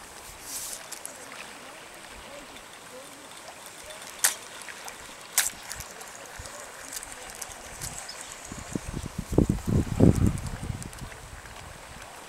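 Steady hiss of a flowing river, with two sharp clicks about four and five seconds in, and a run of low thumps near the end.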